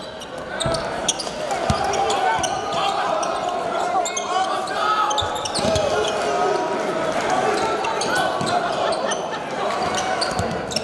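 Live basketball game sound in a gym: a steady mix of crowd and player voices echoing in the hall, with a ball bouncing on the hardwood court a few times.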